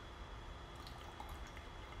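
Faint drips of tea falling from a clay teapot's spout into a glass pitcher, the pour held back by a finger pressing the air hole in the lid, over a quiet room hum.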